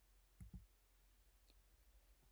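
Near silence with two faint, short clicks, one about half a second in and one about a second later.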